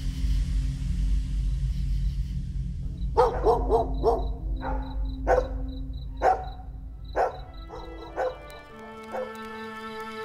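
A dog barking, a quick run of barks and then single barks about a second apart, over a low steady drone. Music with sustained string-like notes comes in near the end.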